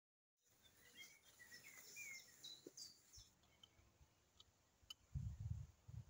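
Faint birds chirping, a string of short rising and falling calls in the first half. About five seconds in, a low rumble starts.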